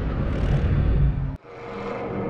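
Animated logo intro sound design: a loud, bass-heavy whoosh that cuts off suddenly a little past halfway, then a new sound with a steady held tone fades in.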